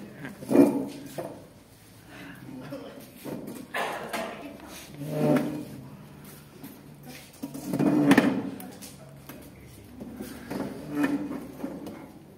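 A man lying on the floor making acted, exaggerated snores, about five of them spaced a few seconds apart, the loudest about two-thirds of the way through.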